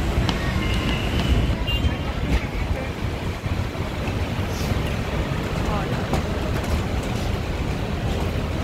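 Steady outdoor background noise with a deep rumble, of the kind wind on the microphone and traffic make, with faint voices in the background and a brief high tone about a second in.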